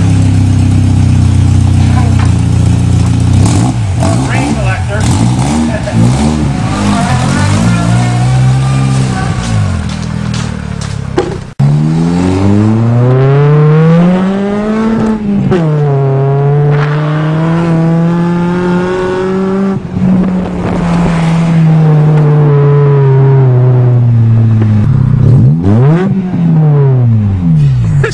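Nissan 200SX engine running loud through a straight vertical exhaust stack (a "fart cannon") poking up through the hood. For the first half it revs parked. After an abrupt cut it is driven hard, its pitch climbing, dropping sharply at a gear change, holding, and then climbing again near the end.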